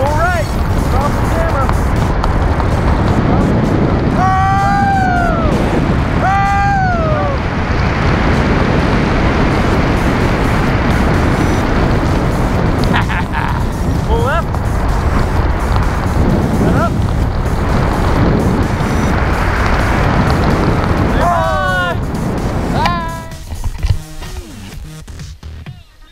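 Wind rushing steadily over the wrist-mounted camera's microphone during a tandem parachute canopy ride. Short voice calls break through it about five and seven seconds in and again near the end.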